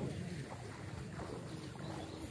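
Steady low rush of a shallow, muddy river around people wading in it, with faint distant voices now and then.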